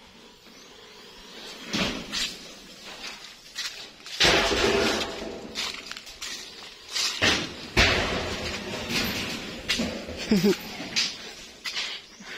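Irregular knocks and bangs, with a longer clattering one about four seconds in and a brief squeak near the end.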